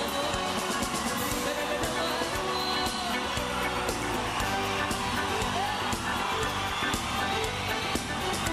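Live raï music played on stage: a full band with steady drum strikes and a male lead voice singing into a microphone.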